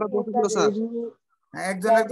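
Speech: a person talking over an online-class call, with drawn-out vowels, a short pause a little past the middle, then talk again.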